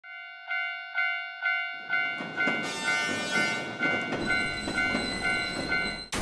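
Railway level-crossing warning bell ringing about twice a second. About two seconds in, the rumble and wheel noise of a passing train joins it and grows louder.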